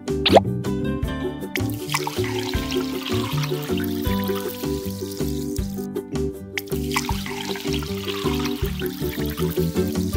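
Background music over coffee being poured from a miniature carton into a small plastic cup, a thin trickle heard twice, about a second and a half in and again about six and a half seconds in.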